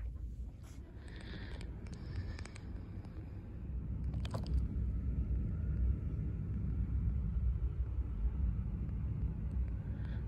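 A steady low rumble that grows a little louder about four seconds in, with a few faint clicks and rustles in the first half.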